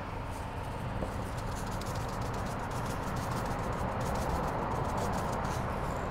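Pepper being shaken from a tin into a pot of simmering chicken and noodles: a steady soft hiss with many light, irregular ticks.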